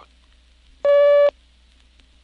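Filmstrip advance beep: a single steady electronic tone with overtones, about half a second long, cueing the projector operator to move to the next frame.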